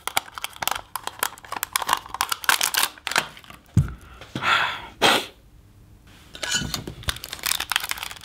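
Rubber balloon being peeled off a set gelatine shell: rapid crackling and crinkling as the gelatine sticks to the balloon and cracks away with it, with a single knock a little under four seconds in and a short lull before the crackling resumes.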